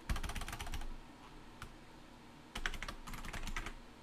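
Rapid typing on a computer keyboard in two short bursts of keystrokes, with a couple of single keystrokes between them.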